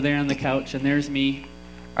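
A man's voice speaking quietly in short phrases over a steady electrical mains hum.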